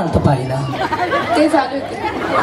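Speech only: people talking, a voice through a handheld microphone with chatter behind it.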